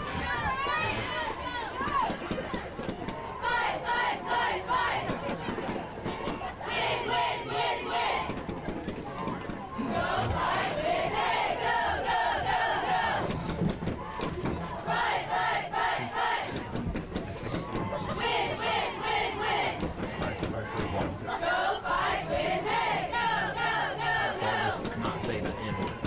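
Cheerleaders shouting a chant in unison, the phrase repeated every three to four seconds, over crowd noise.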